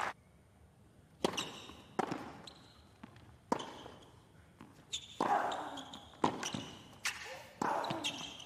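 Tennis rally on a hard court: a tennis ball struck by rackets and bouncing, a string of sharp pops about a second apart over low stadium ambience.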